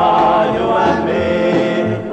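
Up-tempo doo-wop record: a vocal group singing in close harmony over a pulsing bass line, with a brief dip in the music at the very end.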